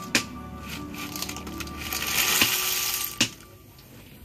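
River snail shells rattling and clattering as a steel bowlful of snails is tipped into a pan of dal. The clatter is loudest about two to three seconds in, with a few sharp knocks along the way.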